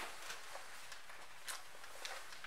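Faint rustling and brushing as an open-face motorcycle helmet is pulled down over the head by its sides, with a short scrape about one and a half seconds in.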